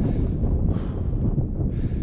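Wind buffeting the microphone on an exposed hilltop: a steady, rough low rumble.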